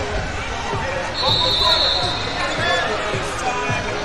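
Echoing hall din at a wrestling tournament: overlapping voices and calls, a run of dull thuds, and a high whistle blown for about a second just after the first second.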